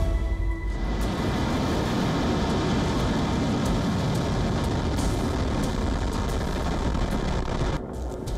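Soyuz rocket lifting off: its engine noise comes in a little under a second in and holds as a dense, steady rush, with music faintly underneath. It drops off just before the end.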